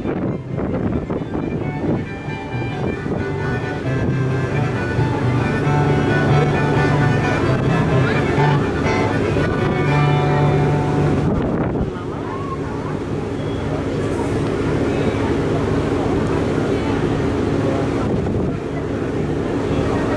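Wind rumbling on the microphone aboard a moving boat, mixed with music that has a low line stepping from note to note, loudest in the middle stretch.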